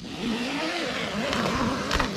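Tent door zipper being pulled open, a rasping buzz whose pitch wavers as the slider speeds up and slows. A sharp knock comes just before the end.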